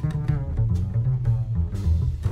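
Upright double bass played pizzicato, leading with a moving line of plucked notes in a jazz trio, with a few light drum-kit strokes behind it.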